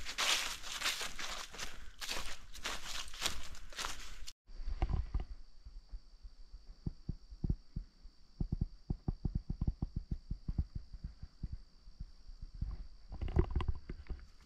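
A hiker's footsteps crunching through leaf litter on a forest trail for the first few seconds, ending in an abrupt cut. After the cut comes a quieter stretch: a steady high-pitched hum under a run of soft, irregular low thumps, with crunching returning near the end.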